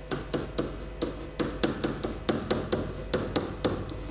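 Pen tip tapping and stroking on a whiteboard while a short formula is written: a quick, irregular run of sharp taps and short scrapes, about four a second.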